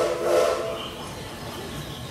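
Steam train whistle sounding one short blast of several steady tones together, about a second long, with a hiss of steam, at the start.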